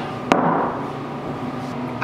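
A single sharp knock as a glass juice bottle is set down on a tabletop, followed by steady, slowly fading background noise.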